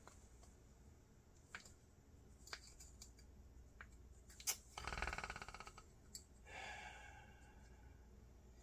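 Faint, scattered clicks and light scrapes of small metal carburetor parts and a hand tool being handled while a spring is refitted, with a short rapid run of ticks about five seconds in.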